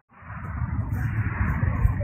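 Wind buffeting an outdoor microphone: a steady, heavy low rumble. The sound drops out for an instant at the start and swells back within about half a second.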